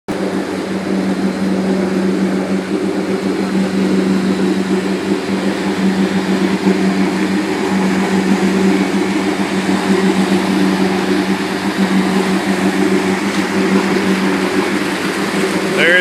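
A boat engine running steadily under way, a constant drone with water rushing past the hull and wind on the microphone.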